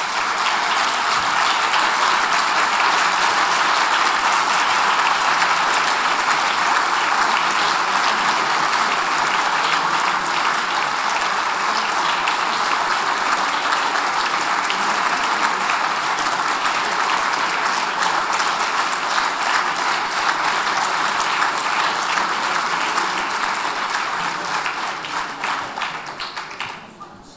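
Audience applauding steadily, a dense sustained clapping that dies away near the end.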